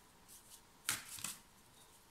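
A deck of tarot cards handled by hand as a card is picked: quiet rustling with one crisp card snap about a second in, followed by a few softer flicks.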